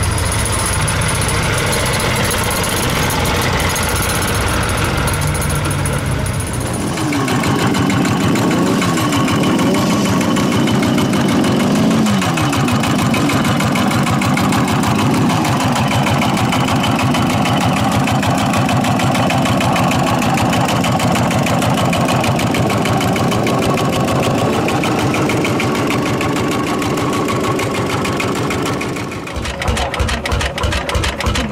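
Vintage engines running in turn: a tractor engine running steadily for the first few seconds. Then a custom motorcycle built around an old engine runs with a fast even beat, its pitch rising and falling as it is revved. Near the end comes a cut to a Lanz Bulldog-type single-cylinder tractor engine running with slow, separate beats.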